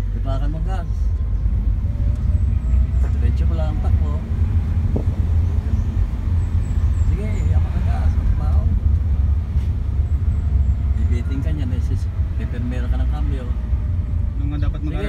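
Steady low rumble of a car's engine and tyres on the road, heard from inside the cabin while driving, with faint voices now and then.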